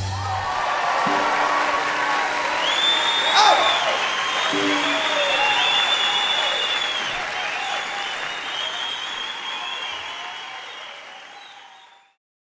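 A live concert audience applauding and cheering as the song ends, with some high whistles. The applause fades away to silence near the end.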